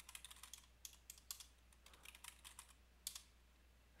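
Faint computer-keyboard keystrokes: a quick run of key clicks, a short pause, then a few more, with one sharper keystroke about three seconds in. This is a new password being typed twice at the passwd prompt.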